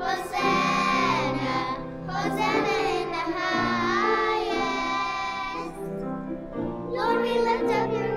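A small group of young children singing a song together, with a short break between phrases about six seconds in.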